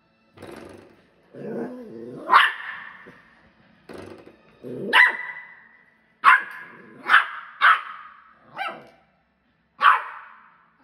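A West Highland White Terrier puppy growling and barking in play: a low growl about a second in runs into a sharp bark, followed by a string of short, sharp barks, several in quick succession in the second half.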